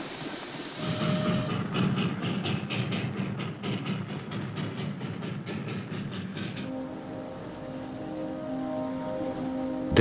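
Train running, with a rapid, even clickety-clack of wheels over the rail joints. About two-thirds of the way in, the clacking fades and a long, steady low tone takes over.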